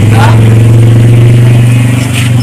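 A loud, steady low hum with even overtones, holding one pitch without rising or falling.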